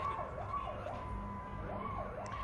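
Faint emergency-vehicle siren wailing, its pitch rising and falling about twice a second.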